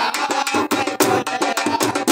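A man singing a Saraiki folk song unaccompanied except for a quick, steady percussion beat of sharp strikes, about five a second.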